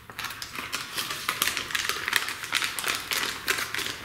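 Plastic packaging bag crinkling and rustling in the hands as small wired push-buttons are put back into it, a run of quick irregular crackles and clicks.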